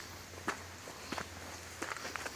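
Footsteps of a person walking on a dirt forest trail: three steps, evenly paced about two-thirds of a second apart.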